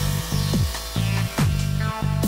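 Electronic dance track with a deep kick drum beating under steady synth bass notes.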